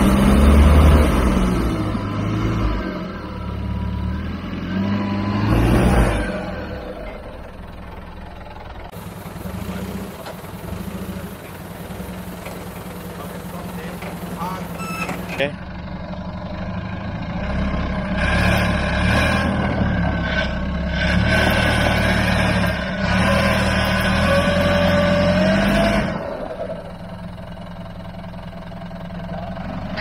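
Land Rover Discovery 1's 300Tdi four-cylinder turbodiesel engine working at low speed as the truck crawls over rock, revving up in bursts and easing off. It is loudest in the first few seconds, quieter through the middle, and rises again in the second half with a climbing whine before dropping back near the end.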